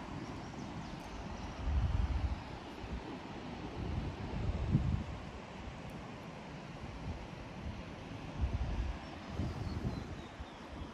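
Wind buffeting the microphone in gusts: low rumbles about two seconds in, again around five seconds and near the end, over a steady outdoor rush of air.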